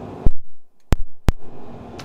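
Three sharp clicks in a pause between speech: the loudest about a quarter second in, trailed by a brief low rumble, then two more close together around the middle.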